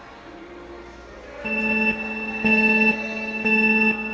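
Countdown sound effect: three identical electronic beeps, each about half a second long and about a second apart, starting about a second and a half in.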